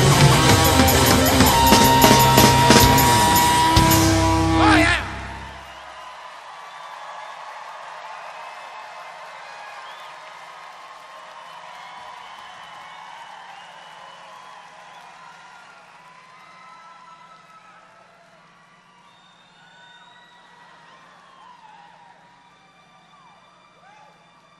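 Live rock band with drum kit, guitar and piano playing the loud final bars of a song, cutting off abruptly about five seconds in. A large outdoor crowd then cheers and whistles, slowly dying down over a steady low hum.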